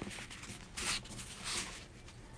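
Crayon scratching on paper in a few faint strokes while a hand is traced, the clearest stroke about a second in.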